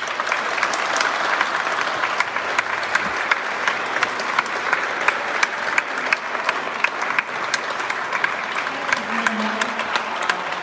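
A small seated audience applauding steadily, with single sharp claps standing out from the patter.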